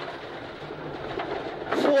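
Ford Escort Mk1 rally car heard from inside the cabin at speed on a gravel stage: steady engine, tyre and gravel noise. The co-driver's voice comes in near the end.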